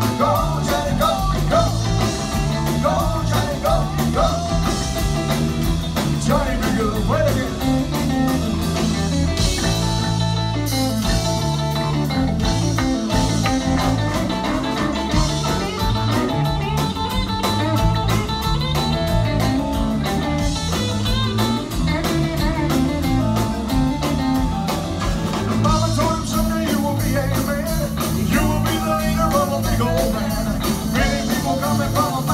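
Live rock-and-roll band playing: electric bass, drums, keyboard and strummed acoustic guitar, in a long stretch with no lyrics heard.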